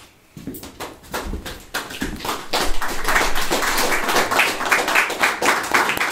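A small audience applauding: a few scattered claps at first, filling out into steady applause after about two seconds.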